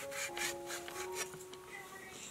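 Chinese cleaver slicing raw fish fillet into thin slices on a wooden chopping board: a quick run of short scraping strokes as the blade draws through the flesh and grazes the wood, easing off in the last half second.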